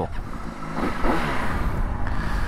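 Honda CBR600RR's inline-four engine idling, with the revs rising briefly about a second in.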